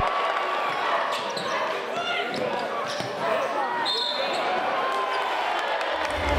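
Live game sound in a school gym: crowd voices and chatter, a basketball bouncing on the hardwood and a few short sneaker squeaks about halfway through.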